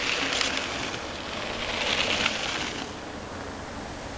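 A mountain bike rides past on a dirt road, its tyres hissing on the loose dirt. The sound swells about two seconds in, then fades.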